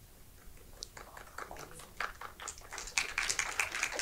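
Audience clapping: a few scattered claps at first, building into denser, louder applause over the last second or two.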